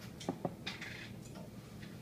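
Sparse, quiet free-improvisation playing from daxophone, alto saxophone and drums: two sharp knocks close together, then a short scraping sound and a few faint ticks.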